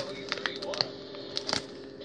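Plastic gummy-candy packet crinkling in short, scattered crackles as a hand rummages inside it for a gummy.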